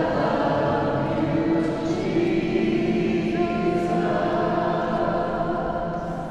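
A group of people singing together in a stone church, holding long notes that echo in the hall. The singing fades away near the end.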